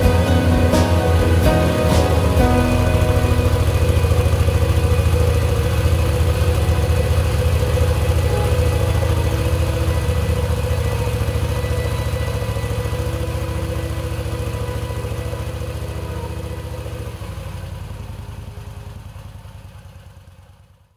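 A cruiser motorcycle's engine running at a steady cruising speed, heard from the rider's seat, with music over it. Both fade out gradually toward the end.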